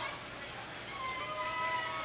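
Electric guitar feedback from an amplifier: several held, whining tones sustained together, with no drums or singing.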